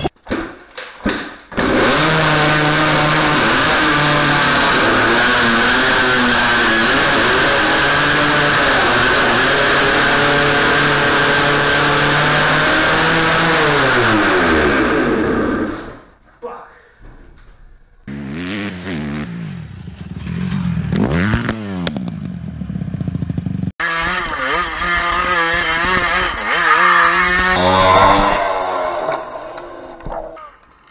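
A two-stroke dirt bike's engine catches within the first couple of kicks after a rebuild and runs loudly and steadily, its pitch falling away as it leaves. Later, other dirt bike engines rev up and down, with a sudden cut in the sound about two-thirds of the way in.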